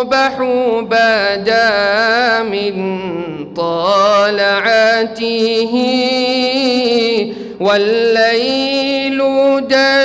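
Unaccompanied male voice chanting an Arabic nasheed in long, ornamented held notes. There are three phrases, with short breaks between them about three and a half and seven and a half seconds in.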